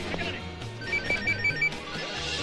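Mobile phone ringtone: a quick run of about five short, high electronic beeps about a second in, over background film music.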